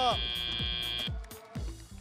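End-of-match buzzer at a robotics competition: a steady high tone that cuts off about a second in, marking that match time is up. Background music with a steady bass-drum beat plays under it.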